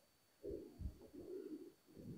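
Faint dove cooing: a few soft, low notes about half a second in, then one longer coo, with brief low wind rumbles on the microphone.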